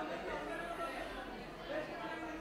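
Chatter of many overlapping voices, with no single clear speaker.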